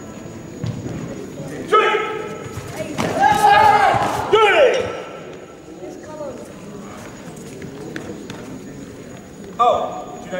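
Loud shouted calls echoing in a large sports hall, a short one about two seconds in and a longer run of them between about three and five seconds in, with another near the end and a few faint knocks in between.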